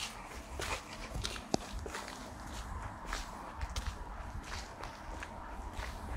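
Footsteps of a person walking at a steady pace on a hard paved path, each step a short scuff or click. A low rumble from wind or the hand-held phone runs underneath.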